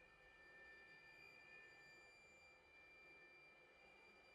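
Very quiet passage of bowed strings holding several faint, high, steady tones, with the lowest of them fading out about halfway through.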